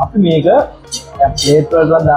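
Cutlery clinking against plates, with two sharp clinks about a second and a second and a half in, over music with a singing voice.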